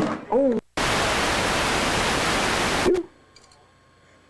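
A brief voice call at the start, then about two seconds of loud, even hiss that cuts off abruptly: videotape static at an edit between two home-video recordings. Quiet room tone follows.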